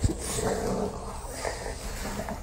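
Dogs making low vocal noises up close while climbing over and licking a person, with a brief knock at the very start.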